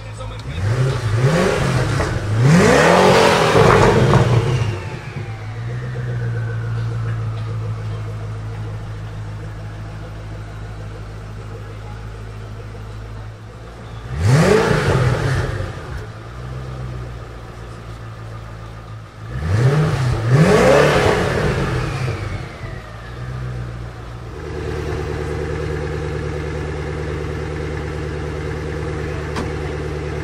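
Koenigsegg Agera RS twin-turbo V8 revved in short blips while standing in neutral: two quick revs at the start, one about fourteen seconds in and two more around twenty seconds, each followed by a faint whistle falling away, then settling back to a steady idle.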